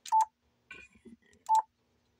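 Two short, single-pitch confirmation beeps from a Yaesu FT-710 transceiver, about a second and a half apart, each starting with a click, as on-screen menu buttons are selected and the mic EQ is switched on.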